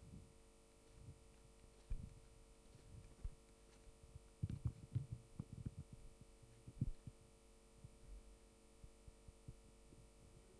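Soft low thumps and bumps, scattered and clustered around the middle, over a faint steady hum: microphone handling noise in a quiet hall.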